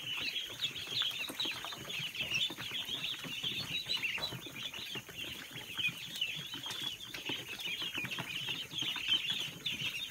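A large flock of Khaki Campbell ducklings peeping without pause, many short high calls overlapping into a continuous chorus.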